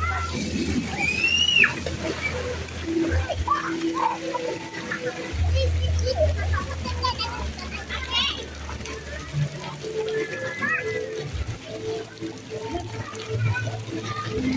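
Children calling and shouting at play in a splash pool, over water splashing and running, with music playing in the background.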